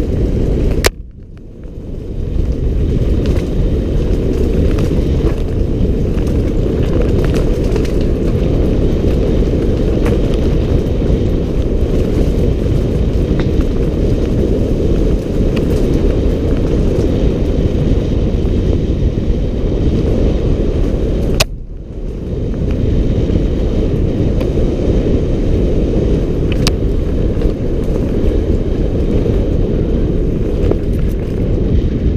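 Loud, muffled rumble of wind buffeting and trail vibration on a helmet-mounted action camera during a fast ride down a rough dirt trail. Twice, about a second in and again about twenty-one seconds in, a sharp click is followed by a brief drop in the rumble that builds back over about a second.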